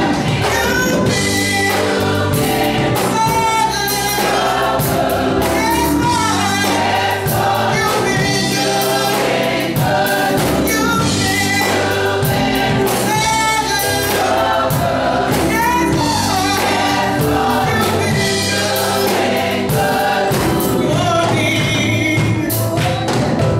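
Gospel mass choir singing with a female lead, backed by a drum kit and low sustained accompaniment, loud and steady.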